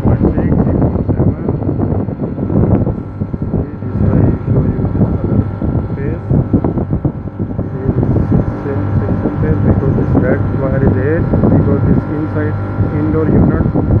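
Three-phase air-conditioner compressor and outdoor unit running with a steady hum, drawing current under load.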